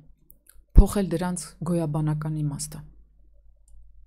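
A woman speaking close to a studio microphone, opening with one sharp low knock about a second in, then a pause near the end.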